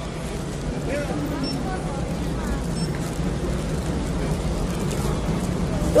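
Busy airport-terminal hall ambience: a steady low rumble with faint, distant voices from the queue. A nearby voice breaks in at the very end.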